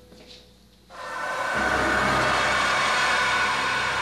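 A loud rushing noise, used as a horror sound effect, swells in about a second in and then holds steady.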